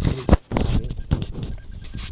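Handling noise close to a phone's microphone: rustling and rubbing with a few sharp knocks as the phone is shifted against clothing and bedding.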